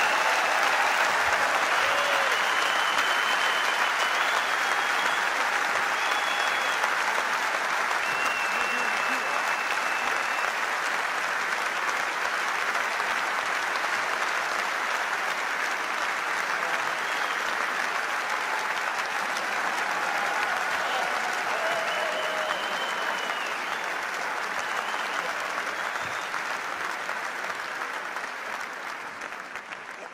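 Large concert-hall audience applauding steadily, with a few faint whistles mixed in, tapering off near the end.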